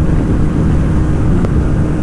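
TVS Apache RTR 160 2V single-cylinder motorcycle running flat out near its top speed of about 123 km/h: loud wind buffeting on the microphone over a steady engine tone.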